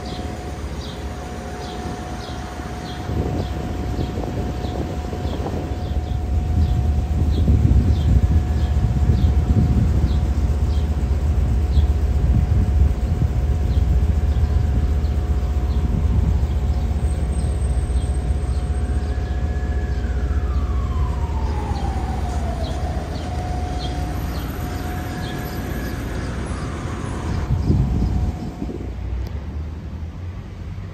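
City street traffic rumbling steadily, with a distant emergency-vehicle siren sweeping down in pitch about twenty seconds in and rising and falling again a few seconds later. A faint steady tone and a regular light ticking run underneath.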